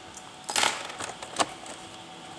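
Hands handling the hard plastic underside of a Lenovo G700 laptop: a short rattle about half a second in, then a single sharp click a little past the middle.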